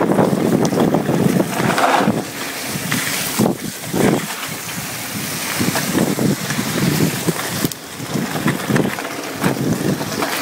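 Wind buffeting the microphone of a camera on a moving mountain bike, gusting up and down, with the rattle of the bike rolling over a rough dirt and gravel track.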